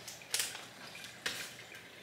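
Quiet handling of a ceramic coffee canister as a bag of coffee is stored inside it: two light knocks, about a third of a second in and again just past halfway.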